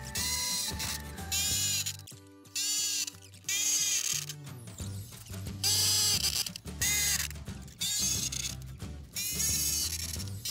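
Background music over repeated short, sped-up bursts of a corded electric drill with an auger bit boring holes through plywood, about one burst a second.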